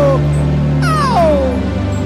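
Slow worship music over sustained keyboard chords; a held sung note falls away just after the start, and about a second in a man's voice slides steeply downward in one wailing cry.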